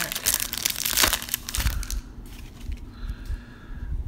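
Shiny foil wrapper of a trading-card pack being torn open and crinkled by hand. It is loud and crackly for about the first two seconds, then drops away to quieter handling as the cards come out.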